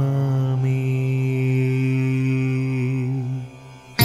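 A man chanting a Sanskrit devotional verse holds its last syllable on one steady note, which fades out a little over three seconds in.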